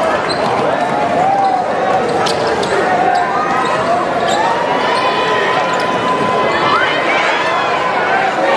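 Basketball being dribbled on a hardwood court amid steady crowd noise and shouting voices; one voice holds a long call a little past the middle.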